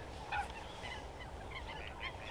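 Faint, scattered calls of distant wetland birds, with one slightly louder call about a third of a second in, over a steady low background rumble.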